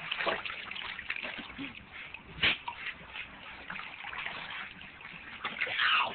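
Water sloshing and splashing in a small wading pool as dogs move about in it, with one sharper splash about two and a half seconds in.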